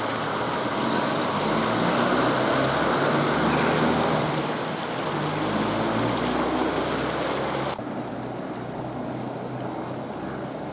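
Road traffic: a passing motor vehicle's engine and tyre noise swells to a peak and eases off. About eight seconds in the sound cuts abruptly to a quieter town background with a faint steady high whine.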